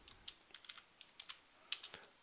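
Computer keyboard being typed on: a run of faint, irregular keystrokes, a little louder near the end.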